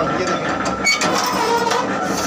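Electric chappal-cutting press machine running, its geared drive making a steady mechanical whir with a sharp click about halfway through and another near the end.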